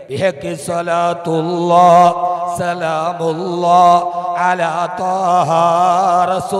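A man chanting a slow, melodic religious recitation, holding long notes with a wavering, ornamented pitch through a stage microphone.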